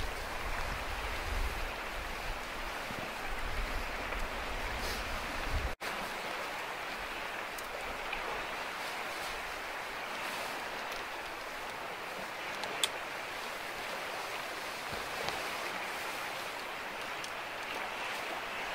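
Steady hiss of rain and running water, with wind rumbling on the microphone until a sudden brief dropout about six seconds in, after which the rumble is gone. A light click about thirteen seconds in.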